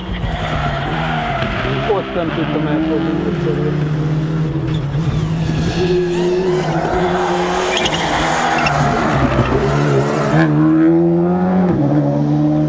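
Skoda Fabia RS Rally2's 1.6-litre turbocharged four-cylinder engine running hard at high revs on track, its pitch dropping and climbing again at a few points. A broad hiss of tyre noise joins it from about six to ten seconds in.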